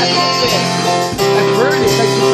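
Country-style gospel music: guitar and keyboard accompaniment to a church song, an instrumental stretch between sung lines.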